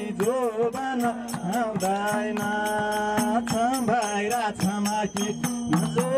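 Nepali folk song: one voice singing a bending, held melody over a steady beat of drum strokes and jingling percussion.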